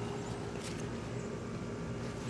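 Steady low background rumble with a faint steady hum, no distinct events.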